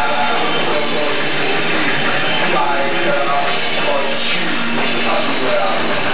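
Live heavy metal band playing loud, with distorted electric guitars and a drum kit pounding without a break.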